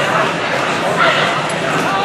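Voices of a crowd in a gymnasium, several people talking and calling out at once, a little louder about a second in.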